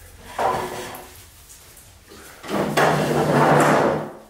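Wooden dining furniture dragged across a wood floor: a short scrape about half a second in, then a longer, louder scrape near the end.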